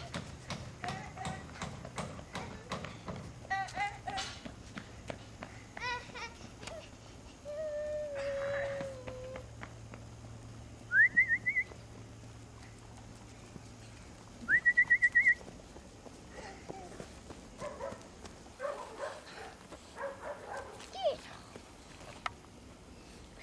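A person whistling twice, each whistle a quick rising note that wavers at the top, about eleven and fifteen seconds in. Around them are scattered short calls from children's voices and a held tone a few seconds earlier.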